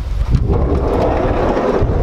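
Sliding side door of a 1973 VW bus being unlatched and rolled open along its track: a rumbling scrape that starts a moment in and lasts about a second and a half, with wind rumbling on the microphone underneath.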